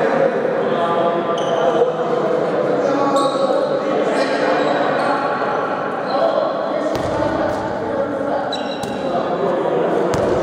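Handball players calling out in a large reverberant sports hall, with the ball bouncing on the court floor and short, high squeaks scattered through.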